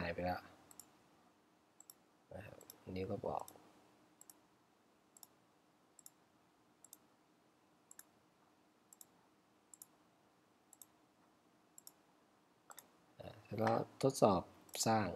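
A series of quiet, sharp clicks from a computer pointing device, roughly one every half-second to second, each a close press-and-release double click.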